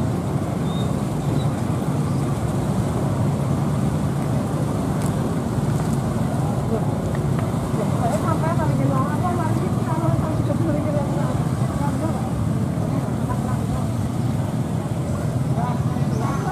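Steady low rumble of vehicle engines, with people's voices over it from about halfway through and again at the end.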